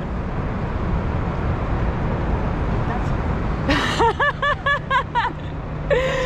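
Low, steady city-street traffic rumble. About four seconds in, a man breaks into laughter, a quick run of short repeated bursts.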